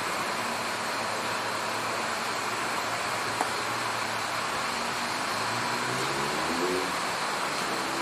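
Steady street background noise, an even hiss, with a faint rising tone about six seconds in.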